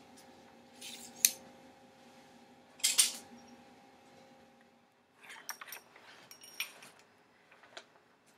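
Scattered light metallic clicks and clinks of small steel parts and tools being handled, as digital calipers are put aside and a steel pushrod is set in place under a rocker arm. There is a sharp clink about three seconds in, then a quick cluster of small clicks in the second half.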